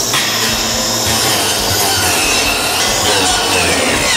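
Angle-grinder cutting disc on a combat robot spinning and grinding into the side of a box: a harsh, steady grinding that starts abruptly, its whine sagging in pitch near the end as the disc bogs down under load.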